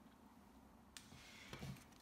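Near silence: room tone, with one faint click about a second in and faint soft handling noise near the end.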